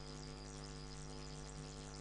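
Steady electrical hum with a faint hiss underneath, unchanging throughout.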